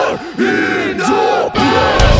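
A break in a melodic deathcore song: the drums and bass drop out, leaving several voices chanting together in held, bending notes. The full band comes back in at the end.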